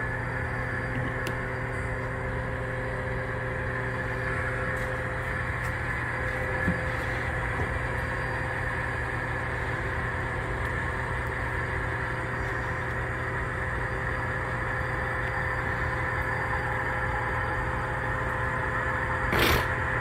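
Steady drone of a model EMD diesel locomotive consist's engine sound as the train works downgrade: a constant hum with a few steady tones that does not rise or fall. A short knock comes near the end.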